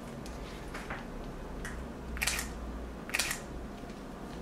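Leica M10 rangefinder shutter released twice, about a second apart, each a short crisp click with a brief mechanical whir, among faint handling clicks of the camera.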